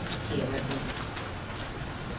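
A man's low, soft murmur, a hum-like "mm" while he pauses to think, heard faintly in the first part, then room tone.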